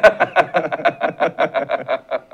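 Men laughing heartily together, a rapid run of 'ha-ha-ha' pulses, loudest at the start and tailing off toward the end.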